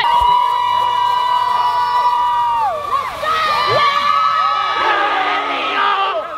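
Girls' voices cheering and yelling. First one long high-pitched held yell slides down at its end. From about three seconds in, several voices shout over one another under another long held cry.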